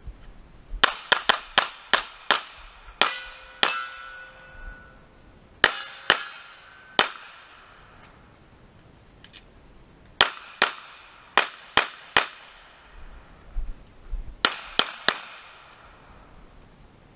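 Glock 19 pistol firing about twenty shots in four quick strings separated by pauses. Some shots are followed by the ringing of struck steel targets.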